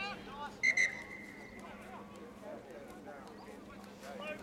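Referee's whistle stopping play at a scrum: a sharp blast in two quick pulses less than a second in, its note trailing off, with players' and spectators' voices calling around it.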